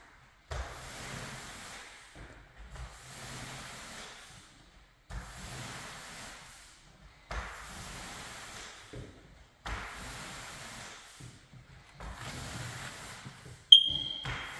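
T-bar applicator pad swishing across a hardwood floor through wet polyurethane in long strokes, about six passes with a short pause between them, each starting with a light knock as the pad is set down. A sharp click with a brief high ring comes near the end.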